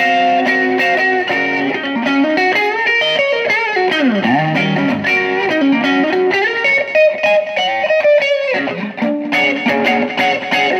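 Telecaster-style electric guitar fitted with a Musiclily ashtray bridge and Gotoh In-Tune saddles, played on the middle pickup setting with some drive: chords and single-note lines. About four seconds in a note slides down and back up; a long held note follows and breaks off briefly near the end before the playing resumes.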